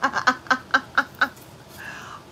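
A woman laughing in a run of about six short 'ha' pulses, about four a second, that stop a little over a second in.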